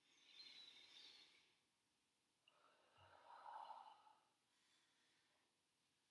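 A woman's faint breathing: two audible breaths, paced to her yoga movement. The first, in the first second or so, is higher and hissier; the second, about three seconds in, is lower and fuller.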